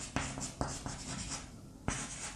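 Chalk writing on a blackboard: a run of short scratching strokes, with a brief pause near the end.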